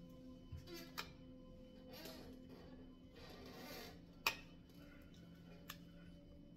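Faint, steady background music at low level, with a few soft clicks and rustles as tarot cards are handled on a stone countertop; the sharpest click comes a little after the middle.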